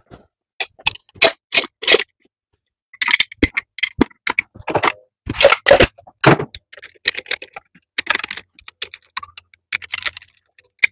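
Irregular metal clicks, knocks and scrapes as a finned valve cover is set onto a small-block Chevy cylinder head and its bolts are started by hand, with the loudest knocks about halfway through.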